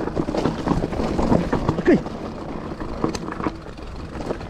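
Downhill mountain bike rolling down a loose, rocky dirt trail: tyres crunching over gravel and stones, and the bike rattling with irregular knocks as it goes over the bumps.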